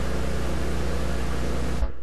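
Steady drone of B-17 bomber engines, a loud rushing noise with a low hum beneath it, which cuts off abruptly near the end.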